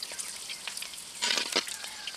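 Pani puri shells deep-frying in hot oil, a steady sizzle and crackle, briefly louder about a second in.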